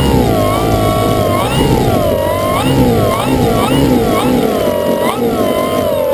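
Radio-controlled Extra 260 model plane's motor running on the ground, its pitch rising and falling over and over as the throttle is worked.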